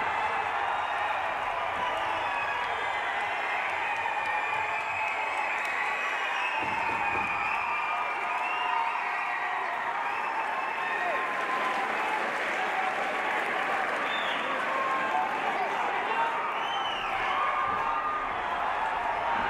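Arena crowd cheering, shouting and applauding, a steady din of many voices, reacting to a kickboxer knocked down by a high kick.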